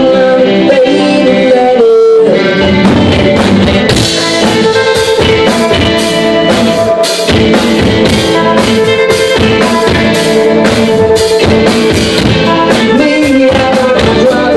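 A live rock band's instrumental break: electric guitars, bass and drum kit, with a reedy lead line of held, bending notes, typical of a harmonica. The drums come back in with a steady beat about two seconds in.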